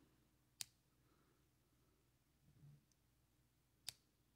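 Near silence broken by two short, sharp clicks about three seconds apart, one about half a second in and one near the end: the small metal jaw and trigger parts of a Scott Archery Little Goose II wrist trigger release being handled.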